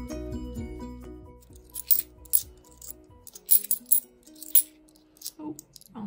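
10p coins clinking against each other in a run of sharp metallic clicks, starting about two seconds in, as stacks are thumbed through by hand. Background music with a steady melody plays underneath.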